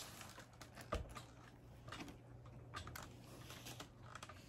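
Faint handling noise of a phone being picked up and turned: scattered light clicks and a soft knock about a second in, over a steady low hum.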